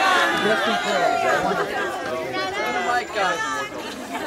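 A large crowd chattering, many voices talking over one another at once.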